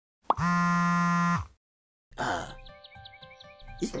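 Channel logo sting: a quick rising blip, then a held buzzy electronic tone for about a second that bends down in pitch as it cuts off. After a brief silence there is a short rushing sound, and light background music starts, with a plucked note repeating about four times a second over steady held notes.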